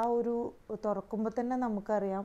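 Speech only: a woman talking, with no other sound standing out.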